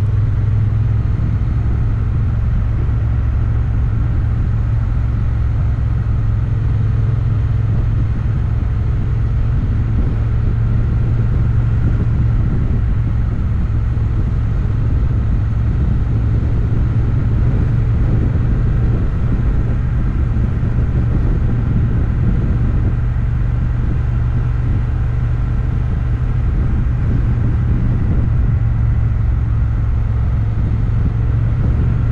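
Motorcycle engine running steadily at cruising speed, a low, even drone that holds without change.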